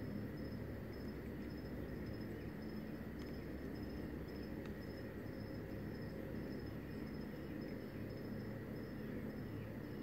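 Crickets chirping at night: a high, evenly pulsing chirp with a fainter steady trill below it, over a low steady hum.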